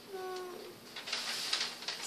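A short hummed 'mm' tone from a girl, falling slightly in pitch, then a second or so of paper sheets rustling as they are handled.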